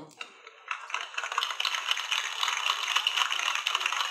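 Recorded applause played through the small speaker of a handheld sound-effects button box. It comes in about a second in, tinny and crackly, with no low end.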